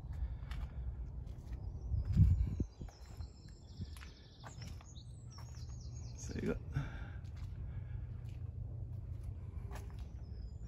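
Outdoor ambience: a steady low rumble of wind and handling on the microphone, with a bump about two seconds in, like a footstep. Then a small bird sings a run of high chirps for about three seconds.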